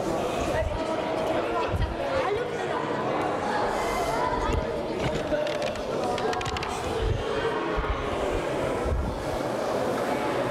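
Indistinct chatter of a group of children and adults echoing in a large sports hall, with a few scattered low thuds.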